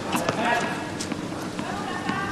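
A tennis ball bounced on a hard court by the server in the pre-serve routine: a few separate sharp bounces with gaps of up to a second between them.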